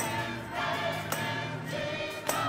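Gospel choir singing to a drawbar organ, with a sharp percussion hit on the beat a little under twice a second.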